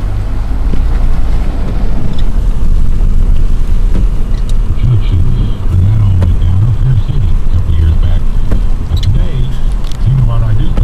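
Car cabin noise while driving: a steady low rumble of the engine and tyres on the road. From about halfway in, a muffled voice with no clear words runs over it.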